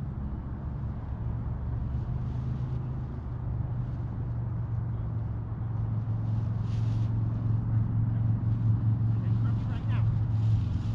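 Paramotor engine and propeller running with a steady low drone that grows louder over the second half, as the paramotor is powered up for take-off.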